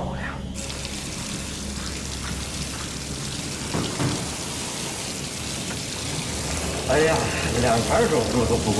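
Water running from the taps of stainless-steel surgical scrub sinks as surgeons wash, a steady hiss.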